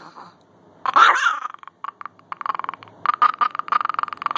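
Dog whining: one louder drawn-out cry about a second in, then a quick broken run of short high squeaks.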